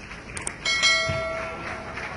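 A subscribe-button sound effect: two quick mouse clicks, then a single bright bell ding that rings out and fades over about a second, over a background of crowd applause.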